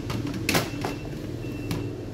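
A dishwasher's wire dish rack being handled: a few sharp clicks and a short rattle about half a second in and again near the end, over a steady low mechanical hum.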